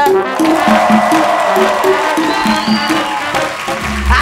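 A TV show's music jingle playing: a quick repeating pattern of short low notes over regular percussion hits.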